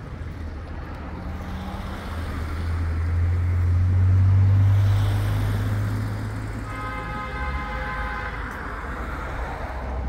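A motor vehicle passing close by, its low rumble building to a peak about halfway through and then fading away. Near the end a steady high-pitched tone sounds for about a second and a half.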